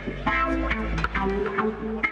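Band music with electric guitar and bass guitar playing held notes over a steady deep bass.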